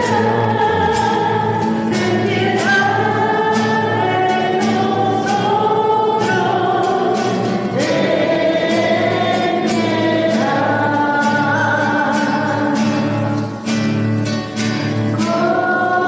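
A church choir singing a Mass hymn in long held notes, over an instrumental accompaniment with a steady rhythmic pulse.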